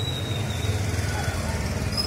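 Motorcycle engine running as it passes close by, over a steady low rumble of street noise.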